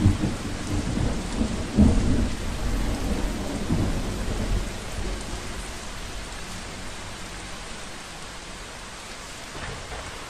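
Steady rain with low rolls of thunder, the rumbles strongest in the first few seconds and fading away toward the end.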